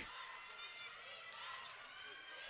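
A basketball being dribbled on a hardwood court: a few faint bounces over low arena crowd noise.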